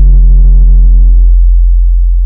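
Deep synthesized bass tone of a logo sting ringing on after its opening hit, steady and loud; its higher overtones die away about one and a half seconds in, leaving a low drone.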